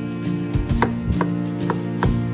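Chef's knife dicing a raw onion on a wooden cutting board: a quick run of sharp knocks as the blade strikes the board, about three or four a second.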